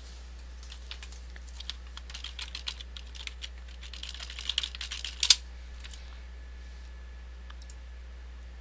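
Typing on a computer keyboard: a quick run of key taps lasting about five seconds and ending in one louder keystroke, over a steady low hum.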